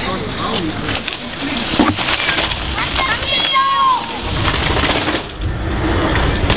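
Indistinct voices over steady outdoor ambience, with a few short pitched calls about halfway through.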